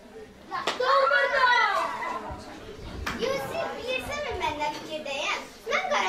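Children's voices speaking and calling out loudly in a large room, starting under a second in after a quiet moment.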